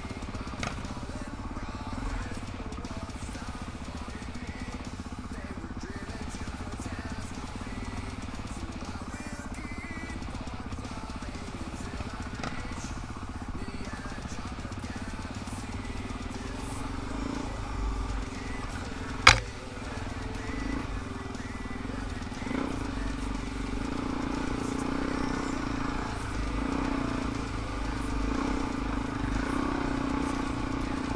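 Single-cylinder four-stroke dirt bike engine running at low trail speed, a steady note that grows louder in the last third. One sharp knock stands out about two-thirds of the way through.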